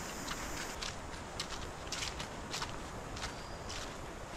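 Footsteps on a dirt path strewn with dry fallen leaves: an irregular series of light crunches, about two a second.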